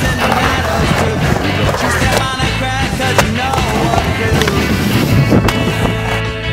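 Skateboard wheels rolling and carving across a concrete bowl, with a few sharp knocks from the board, under background music.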